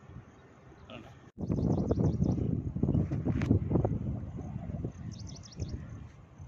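Outdoor seaside ambience: after a brief quiet, irregular low rumbling wind noise on the microphone from about a second and a half in, with birds chirping in quick short series, once early and again near the end.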